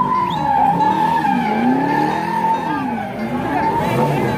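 Car tyres squealing in a burnout, a steady high squeal that wavers slightly, with the engine revving up and down underneath.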